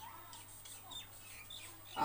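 Marker pen writing on a whiteboard, making a few faint, short squeaks over a low steady hum.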